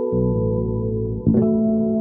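Zon Hyperbass fretless electric bass playing ambient music: several ringing notes held over a deep low note, with a new note plucked about a second and a quarter in.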